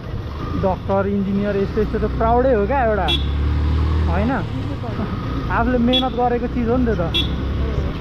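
Voices talking over a motorcycle running through city traffic, with a steady low rumble of engine and road noise that swells for a couple of seconds about a third of the way in. Three short sharp clicks sound near the middle and toward the end.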